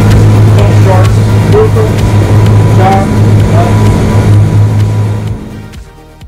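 Boat engine running steadily at speed, a low drone with rushing wind and water, fading out near the end.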